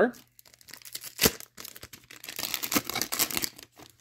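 Hockey card pack wrapper being torn open and crinkled: an irregular crackle with one sharp snap about a second in.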